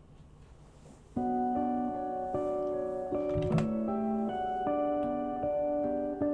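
Instrumental guitar duet music starting suddenly about a second in, with ringing, sustained notes that change every half second or so. A single soft knock sounds about three and a half seconds in.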